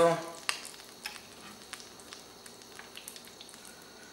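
Hot cooking oil at about 325 °F in a cast-iron pot sizzling faintly, with scattered small pops and crackles.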